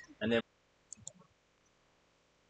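Two short, faint clicks in quick succession about a second in, following a brief spoken word.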